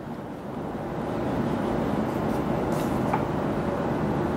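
A steady low rumbling noise that swells about a second in and holds, with a couple of faint clicks near the end.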